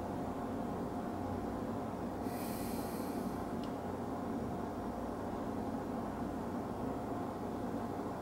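A man sniffing a glass of gin once, a short breathy inhale through the nose about two seconds in, over a steady room hum.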